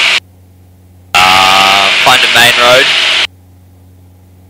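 Aircraft headset intercom audio: the voice-operated intercom opens for about two seconds, letting in a hiss of cabin and engine noise with a voice, then cuts off abruptly. Only a faint steady engine hum is heard while it is shut.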